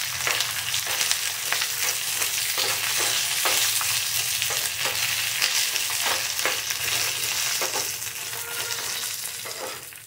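Peanuts, dried red chillies, green chillies and curry leaves sizzling in hot oil in a small steel tempering pan, a steady frying hiss. A steel spoon stirs and scrapes against the pan throughout, adding short irregular clicks.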